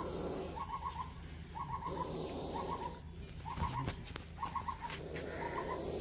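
A bird calling repeatedly: a short, rapid trill of four or five notes, repeated about once a second.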